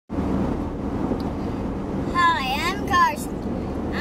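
Steady road noise inside a moving car's cabin, with a child's high voice calling out about halfway through, its pitch sliding down and back up.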